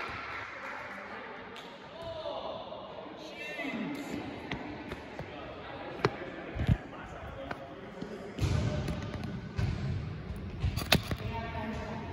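Volleyball court background: distant voices and a few sharp thumps of a volleyball being struck and bouncing on the gym floor.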